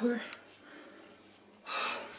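A woman's loud, breathy exhale lasting about half a second near the end, a sigh of relief, after the tail of a spoken word at the start.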